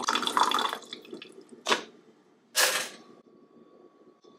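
Water running from a countertop water dispenser into a plastic sippy cup, fading out about a second in. Two short sharp noises follow, the second louder.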